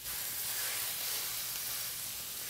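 80/20 ground beef sizzling steadily in a hot stainless steel skillet with a little canola oil, searing as it starts to brown.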